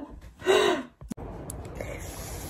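A woman lets out one short, breathy gasp about half a second in. It is followed by a sharp click and then a steady low background rumble.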